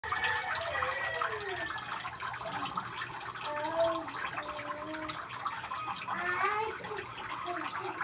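Indistinct voices in the background over a steady hiss.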